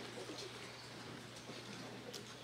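Faint auditorium ambience: shuffling and a low murmur as singers move onto the risers, over a steady low hum, with one sharp knock at the very start.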